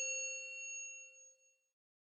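The ring-out of a single bell-like chime struck just before, its clear overlapping tones fading steadily and dying away about a second and a half in.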